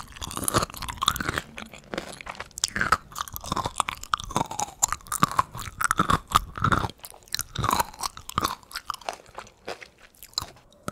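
Close-miked chewing of crunchy pickled-chili okra: a dense run of irregular crisp crunches mixed with wet, juicy mouth sounds, thinning out in the last second.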